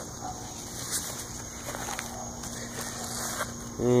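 Faint rustling of large pumpkin leaves being handled, with a few light ticks, over a steady low outdoor background hum.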